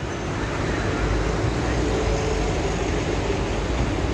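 Steady road traffic noise on a city street: a continuous rumble of passing cars with no single event standing out.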